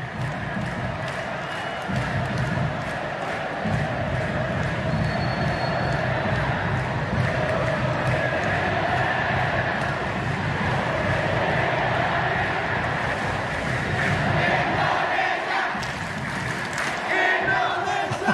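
Stadium crowd of Indonesian football supporters chanting and singing together, loud and sustained, over a low rhythmic pulse that drops away briefly near the end.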